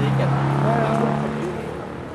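A tractor engine running at a steady speed, then fading away after about a second and a half.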